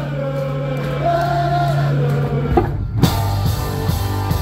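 Live rock band: a sung line over a held guitar and bass chord, then a short break and the full band with drums coming back in about three seconds in.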